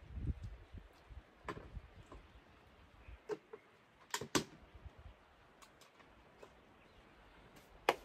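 Scattered light knocks and clicks of objects being handled and set down, with soft footsteps on wet concrete; the two sharpest clicks come close together about four seconds in.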